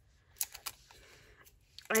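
Two light clicks about half a second in, with faint handling noise after them, then a woman's voice starting near the end.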